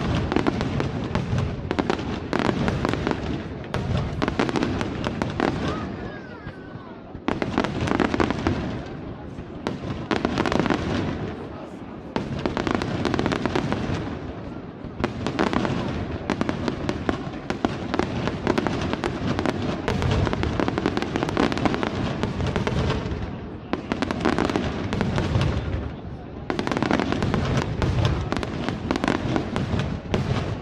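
Fireworks display: aerial shells bursting in rapid, near-continuous barrages with crackle. The volleys ease off briefly a few times and then build again.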